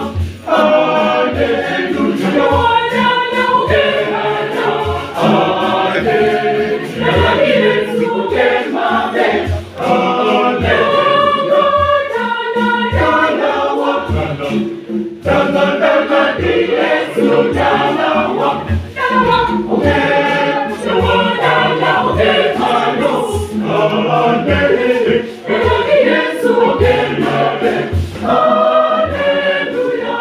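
A choir singing in parts, accompanied by a pair of tall hand drums played in a steady beat of about two strokes a second.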